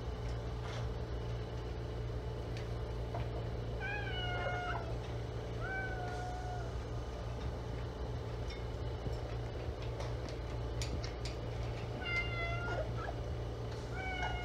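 A pet parrot giving three short, pitched calls about four, six and twelve seconds in, each under a second long, with the pitch sliding then holding level, over a steady low hum.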